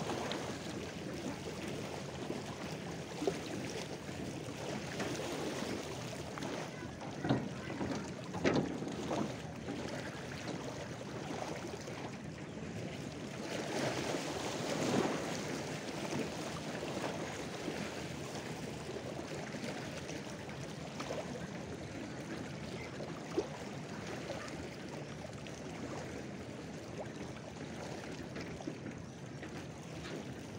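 Small lake waves lapping against the shore in a steady wash, with a few louder splashes about a quarter of the way in and again near the middle.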